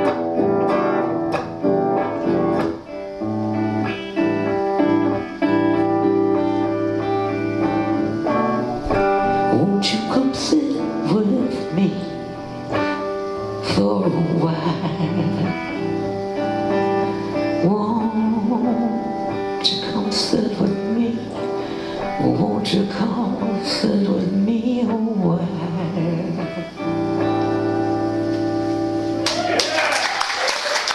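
Electric guitar playing, with a woman singing along from about ten seconds in. Applause starts just as the song ends, at the very end.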